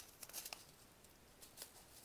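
Near silence, with a few faint crinkles about half a second in from a holographic foil bag of diamond-painting drills being handled.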